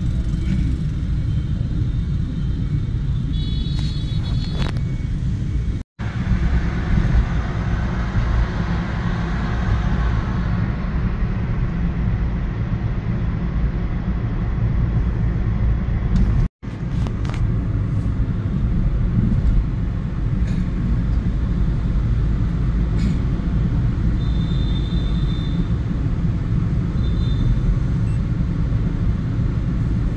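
Steady low rumble of engine and road noise heard from inside a car cabin as it drives through city traffic. There are a few short high-pitched beeps, and the sound cuts out abruptly twice.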